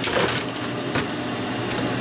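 A laptop motherboard and its loose metal parts rattle as they are pulled free and handled on the workbench: a short rattle at the start, then a sharp click about a second in. Steady fan noise runs underneath.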